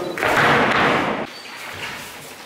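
An aikido partner being thrown onto a gym mat: a sudden thud followed by about a second of noisy rustling from the practice uniform and the body hitting and sliding on the mat.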